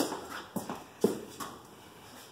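A few light knocks and footsteps, the sharpest about a second in, as a man steps up to a large framed painting and takes hold of its frame.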